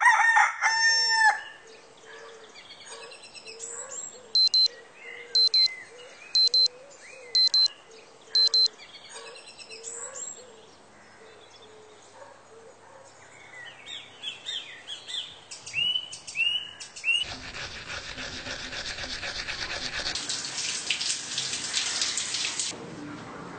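A rooster crows, and birds chirp throughout as five loud electronic alarm beeps sound about a second apart. In the last few seconds a shower's water spray runs steadily.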